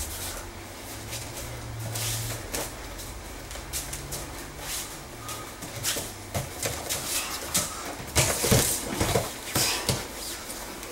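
Grappling on foam mats: bare feet shuffling and slapping, bodies thudding, with heavy breathing and grunts. A louder burst of thuds comes about eight seconds in, as one wrestler is taken down onto the mat.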